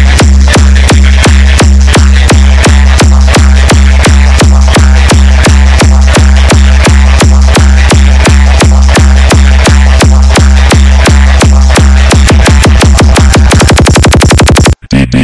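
Loud electronic dance remix in the Odia DJ 'hard vibration' style: a deep held bass tone under a steady drum hit about four times a second. Over the last two seconds the hits speed up into a rapid roll.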